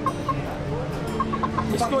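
Black hen clucking: short, separate clucks, a couple at first and then a quick run of several in the second half.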